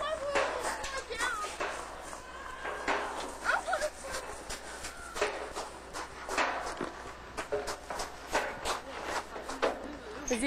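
Voices in the background with many short knocks and clicks scattered throughout, the sounds of children playing.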